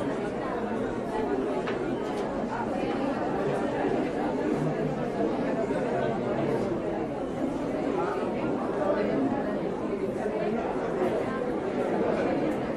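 Indistinct chatter of many shoppers' voices in a large supermarket, a steady background hubbub with no single voice standing out.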